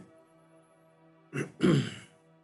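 A man clearing his throat in two quick rasps, the second longer, about one and a half seconds in.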